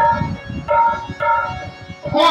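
Harmonium playing three short held chord phrases between sung lines, with hand-drum strokes beneath the first of them.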